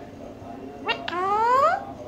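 Pet parakeet calling about a second in: a quick sharp note, then one long, loud call that rises in pitch and stops abruptly.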